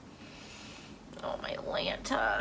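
A woman's soft, whispery voice, starting about a second in, while she is close to tears.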